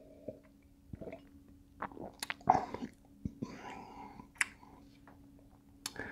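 A man sipping beer and swallowing, with scattered soft mouth clicks and small wet noises as he tastes it. A faint steady hum runs underneath.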